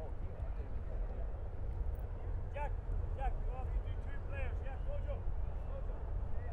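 Short, distant shouts and calls from players on a soccer pitch, several in quick succession in the middle of the stretch, over a steady low rumble.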